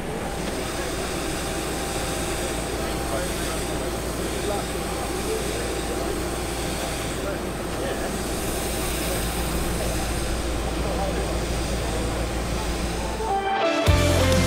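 Steady jet airliner noise on an airport apron: a low rumble with a thin high whine over it, and people's voices chatting underneath. It cuts off suddenly near the end.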